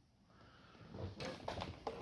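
Faint handling noise: a few soft knocks and rustles while the power cable and extension cord are being connected.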